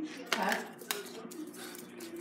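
A few light, sharp clicks and clinks of small hard objects, the clearest about a second in, around a brief spoken 'huh?'.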